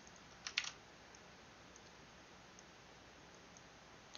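A quick run of sharp computer clicks about half a second in, then faint room tone.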